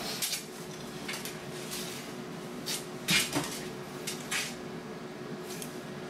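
A few scattered knocks and clinks of a cereal bowl and spoon on a desk, the loudest about three seconds in, over a faint steady hum.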